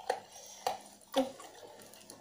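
Close-up eating sounds: three short wet mouth smacks, about half a second apart, from chewing fried chicken and rice.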